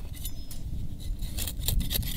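Hand trowel cutting a slit into dry, stony soil: short gritty scrapes and clicks of the blade, most of them in the second half, over a steady low rumble.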